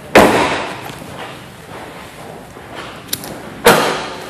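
Car door shut with a slam just after the start, followed near the end by a second, similar slam-like thud with a faint click just before it.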